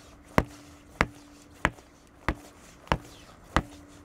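A car tire on an alloy wheel bounced on the ground like a basketball, six regular thumps about two-thirds of a second apart. The bouncing is done to reseat the tire bead and stop a slow bead leak.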